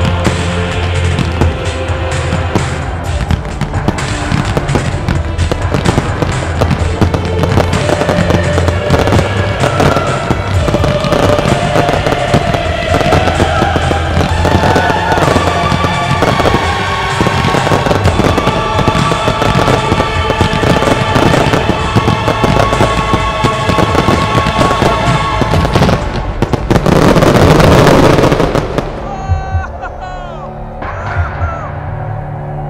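Fireworks display: shells bursting and crackling in quick succession over music, building to a loud, dense barrage near the end that then dies away.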